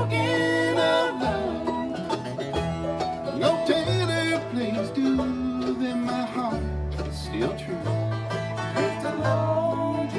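Acoustic bluegrass band playing an instrumental break between sung verses: fiddle carrying the melody with sliding notes over banjo, guitar and upright bass.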